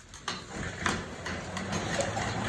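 Elliptical cross trainer in use: a steady low whir from the flywheel as she strides, with a couple of knocks from the moving arms and pedal linkage.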